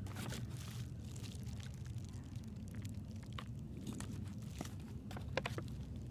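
Faint clicks and crackles of fingers handling a pinch of tobacco-free coffee dip close to the microphone as it is put into the lip, over a low steady rumble.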